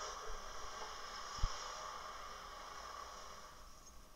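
Faint, steady hiss of background noise in recorded outdoor video footage being played back, with one soft low thump about a second and a half in. The hiss thins out near the end.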